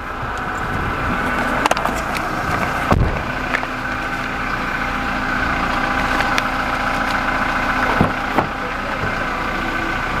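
Toyota Hilux Revo pickup's engine running steadily as it drives off-road, with a few short knocks, the strongest a low thump about three seconds in and another about eight seconds in.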